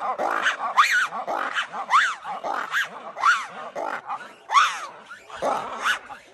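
Ruffed lemur giving its loud call: a rapid series of barking calls that rise and fall in pitch, about two or three a second, growing quieter toward the end as the call winds down. It is the kind of call ruffed lemurs use to alert and to locate family members.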